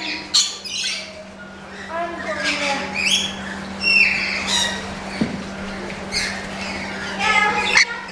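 Rainbow lorikeets giving many short, harsh, high-pitched squawks and screeches over a steady low hum.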